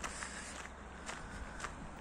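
Footsteps of a person walking at an even pace, about two steps a second, over a low steady rumble.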